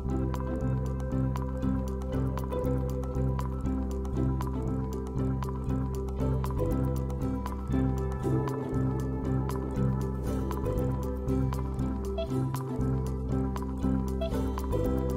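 Background music with a steady pulsing low beat and short, dripping, plinking notes over sustained tones.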